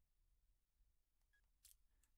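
Near silence: room tone, with a faint brief click near the end.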